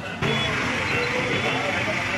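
Street noise of passing road traffic and people's voices, steady throughout. It comes in abruptly a fraction of a second in and is much louder than the quieter sound just before.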